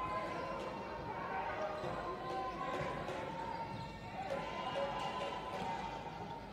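Indoor basketball arena sound: a basketball bouncing on the hardwood court under steady crowd and player chatter, with a faint steady tone.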